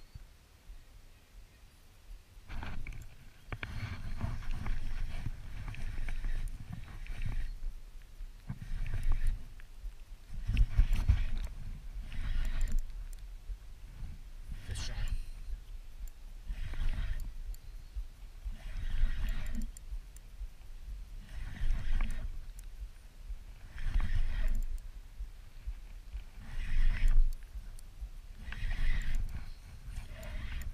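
River water sloshing and lapping right at the microphone, coming in surges about every two seconds after a quieter first couple of seconds.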